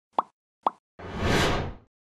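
Logo-intro sound effects: two short pops about half a second apart, then a whoosh that swells and fades over most of a second.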